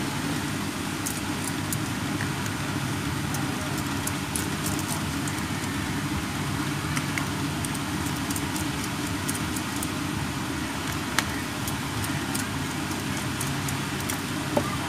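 Faint, irregular ticks and small clicks of a precision screwdriver turning out the tiny screws of a mobile phone's plastic housing, with one sharper click about eleven seconds in, over a steady low background hum.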